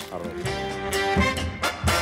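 Background music with held notes and a few sharp percussive hits.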